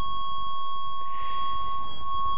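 Steady 1100 Hz sine-wave test tone from a signal generator, played through an amplifier and loudspeaker: a single unwavering high beep-like tone with faint higher overtones.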